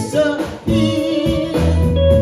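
Live band music: a woman singing lead into a microphone over a Telecaster-style electric guitar, electric bass and drum kit, with a short dip in loudness about half a second in.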